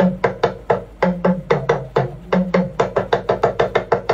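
Talking drum played in a quick, steady rhythm of sharp strokes, about four to five a second and a little faster near the end. The strokes alternate between a higher and a lower pitched note, and each one rings briefly.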